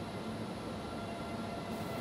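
Steady low background rumble with a hiss.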